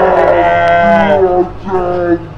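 A man's long, drawn-out shout of "jam!", held for over a second and dipping in pitch at the end, followed by a shorter cry near the end.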